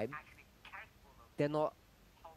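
Speech only: a couple of short spoken words with pauses between them.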